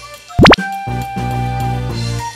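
Background music with held notes, cut by a short, loud edited-in pop sound effect about half a second in: a quick upward sweep in pitch.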